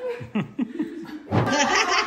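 A group of people laughing: a few short laughs at first, then many voices joining in loudly just over a second in.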